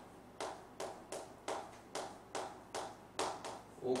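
Chalk tapping and scraping on a chalkboard during writing: about ten short sharp taps, two or three a second.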